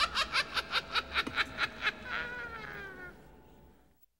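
The Crypt Keeper's cackle: a rapid, high laugh of about seven short bursts a second for around two seconds, then drawing out into a falling laugh that fades away.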